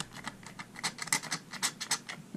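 Glass dropper clicking and scraping against the inside of a small ceramic bowl as it stirs a thin oil finish: a quick, irregular run of light ticks.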